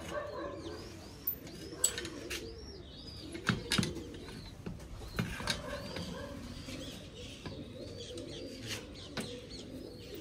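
Domestic pigeons cooing steadily, over many short, high, repeated peeping calls and a few sharp clicks.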